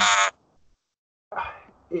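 A man's voice: one short, high vocal burst lasting about a third of a second, followed by a pause and then speech starting again about a second and a half in.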